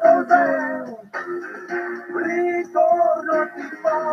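A song playing: a voice singing over backing music.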